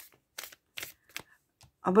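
A deck of tarot cards being cut and handled, giving a run of short, crisp card snaps about every half second.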